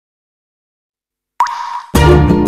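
Silence, then about a second and a half in a short cartoon sound effect: a sudden pop with a quick upward pitch glide and a brief held tone that fades. Plucked-string music starts right at the end.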